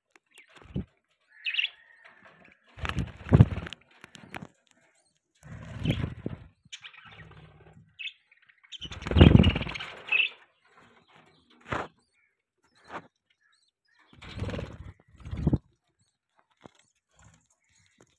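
Budgies flapping their wings in about six short bursts, with a few high chirps in between.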